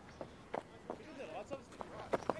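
Faint cricket-ground ambience in a lull in the commentary: distant voices and a few light taps scattered through the moment.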